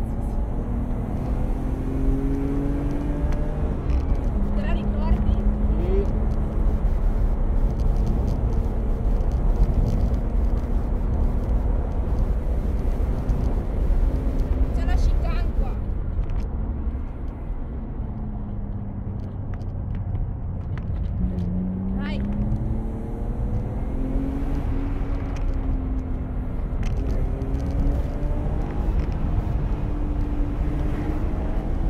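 BMW E36 320i's inline-six engine heard from inside the cabin under hard driving, its note rising and falling repeatedly as it accelerates and changes gear, over steady road noise. The engine eases off briefly about two-thirds of the way through, then climbs again.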